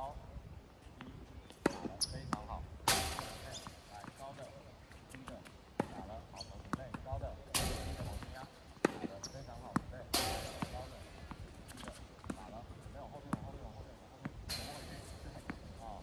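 Tennis balls being hit with rackets and bouncing on a hard court: a string of sharp, irregular pops and thuds, with a few short rushes of noise and faint voices in between.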